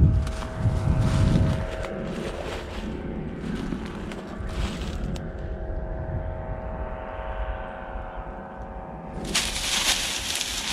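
Steady drone of a distant engine, with low buffeting and crunching of steps through dry grass early on. About nine seconds in, a loud rustling hiss sets in.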